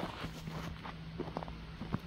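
Footsteps crunching on a gravel driveway: a few irregular steps over a faint, steady low hum.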